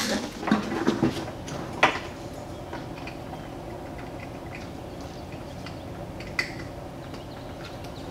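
Light knocks and clicks of hands working at the back of a car headlight housing, fitting the bulb and its wiring, over a steady low hum; one sharp click comes about six and a half seconds in.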